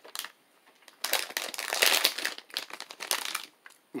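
Candy packaging crinkling as it is handled, a run of crackly rustles from about a second in until shortly before the end, after a few light clicks.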